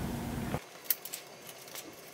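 Low workshop room hum that cuts off about half a second in. It is then near-quiet except for a few faint, sharp clicks.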